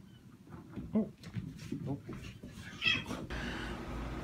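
A kitten meowing a few short times.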